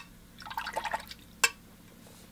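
A number 10 kolinsky sable round watercolour brush being wetted in a jar of water: a short run of small splashes about half a second in, with a sharp tap at the start and another about a second and a half in.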